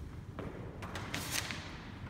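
Footsteps going down a few steps onto a concrete garage floor, with scuffs and rustling from the handheld phone: a few light knocks and a brief scraping hiss about a second in, over a low steady rumble.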